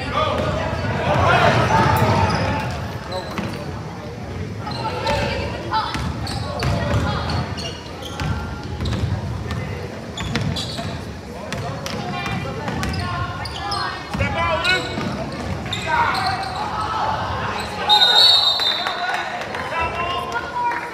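A basketball dribbled and bounced on a hardwood gym floor amid players' and spectators' shouts, echoing in the large gym. Near the end a referee's whistle blows a short warbling blast, calling a foul.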